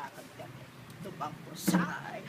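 An elderly woman's voice: low talk, then one short, loud shout about one and a half seconds in.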